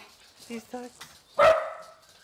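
A house dog barking: one loud, sharp bark about one and a half seconds in, after a couple of short softer yips.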